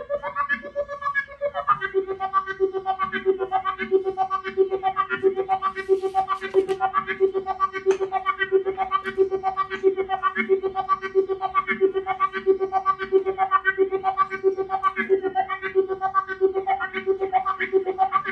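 Moog Moogerfooger effects modules making electronic synth sound. After a second and a half of gliding tones, a steady pitched tone settles in, pulsing about three times a second, with a filter sweeping up and down about once a second.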